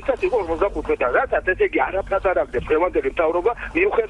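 Continuous speech from the studio talk show; no other sound stands out.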